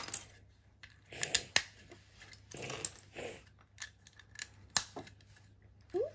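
Plastic LEGO bricks and plates being handled and pressed together, a string of sharp clicks and short rattles as the pieces knock against each other.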